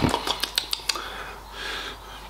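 Plastic food tub and its lid being handled: a run of small sharp clicks and crackles in the first second, then a soft hiss near the end.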